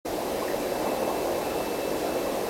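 Aquarium sponge filter running on its air line: a steady noise of water and bubbling.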